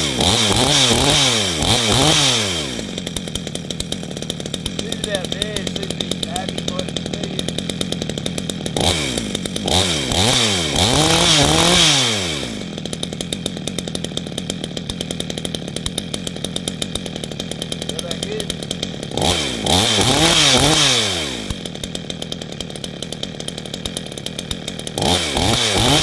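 62cc two-stroke chainsaw, fitted with a modified single large-port muffler exit, running at a rattling idle and revved up four times, near the start, about ten seconds in, about twenty seconds in and near the end. Each time the engine speed climbs, holds briefly and drops back to idle.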